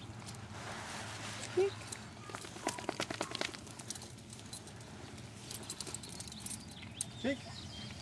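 Footsteps and a dog's paws scuffing on gravel and dirt, with a quick run of sharp clicks about two and a half seconds in.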